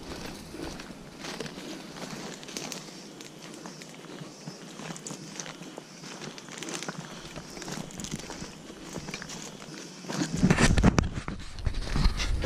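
Footsteps on a forest trail of dry leaf litter and twigs, irregular rustling and snapping steps. Louder rustling near the end as the walker brushes through dense foliage.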